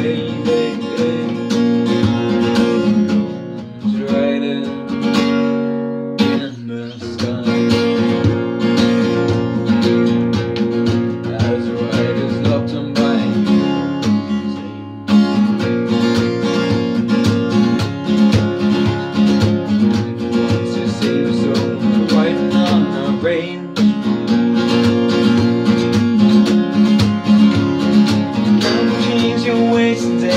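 Acoustic guitar strummed in a steady chord rhythm.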